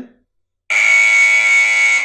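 SENS8 outdoor security light camera's built-in siren sounding: a loud, steady, shrill alarm tone that starts suddenly just under a second in.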